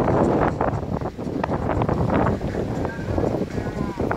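Strong wind buffeting the microphone, a loud, uneven rumble.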